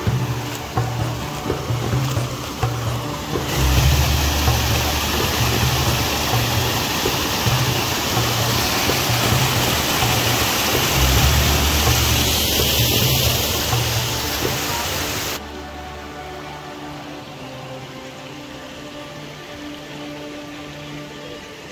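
Rushing water of a small waterfall spilling over stone steps, a loud steady roar that comes in about four seconds in and cuts off suddenly about three-quarters of the way through. Background music with a steady beat plays throughout.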